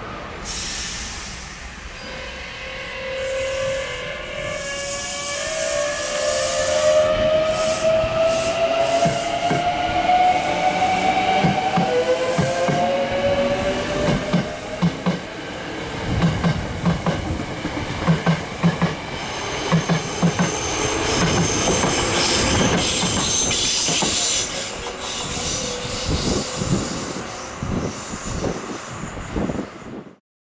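Hankyu 8300 series electric train's GTO-VVVF inverter accelerating away, its whine climbing steadily in pitch over the first dozen seconds. After that a train runs past with its wheels clattering over rail joints in quick knocks, and a high whine joins in toward the end.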